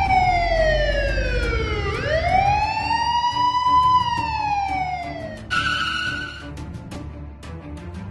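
Police siren wailing: its pitch falls slowly, rises again, then falls once more before cutting off about five and a half seconds in. A short steady tone follows and fades out, with music with a beat underneath throughout.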